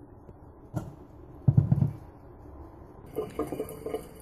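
Water sounds from a pot of cooking fettuccine, with a low thump about one and a half seconds in. Near the end a brighter hiss of water comes in.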